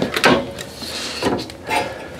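Hinged glass cover of an RV gas range being lifted by hand: a few light knocks and rubbing as it moves.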